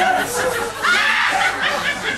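A group of people laughing in overlapping bursts, with excited voices mixed in.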